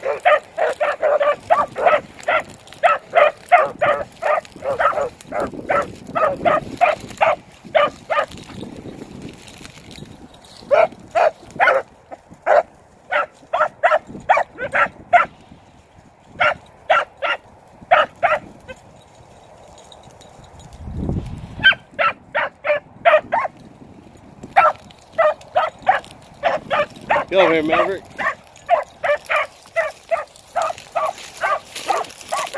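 Beagles barking in quick runs of yelping barks, about three a second, broken by short pauses: hounds giving tongue as they work a scent trail.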